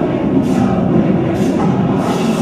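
Choral music: a choir of voices singing over steady accompaniment, played as a dance soundtrack.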